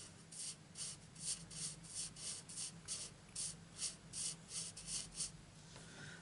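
Felt-tip marker colouring on cardstock: quick back-and-forth strokes of the nib rubbing across the paper, about three to four a second, stopping shortly before the end.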